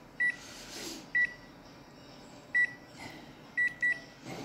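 Photocopier touchscreen key beeps: five short high beeps, one for each button press as the menus are stepped through, the last two in quick succession.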